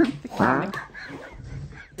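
A fart: one short pitched, wavering rasp about half a second in, then fainter low rumbling.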